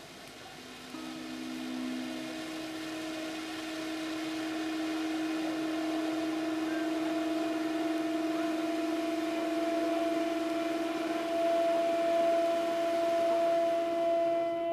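A firework fountain hissing steadily as it showers sparks, growing louder, with two long steady held tones over it, the lower one starting about a second in and a higher one joining a few seconds later.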